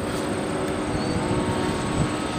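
Distant steady drone of a Skywalker RC plane's twin electric motors and propellers flying overhead, under low rumbling wind noise on the microphone.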